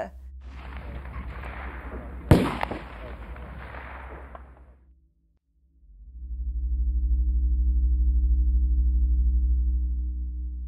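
A single target rifle shot cracks about two seconds in over steady outdoor background noise. From about six seconds a low, steady drone of held tones swells in: ambient background music.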